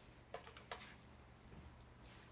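Near silence broken by two faint clicks in the first second: metal tongs knocking against a stainless steel skillet as shredded chicken and chopped cilantro are tossed together.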